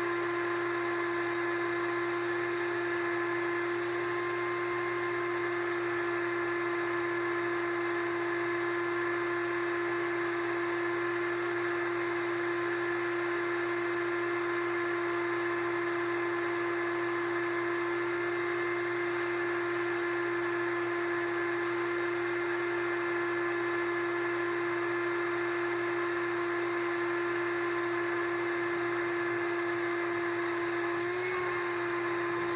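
Shop vac running steadily with a constant high whine as its hose nozzle sucks up a pile of sawdust through a Dust Deputy cyclone.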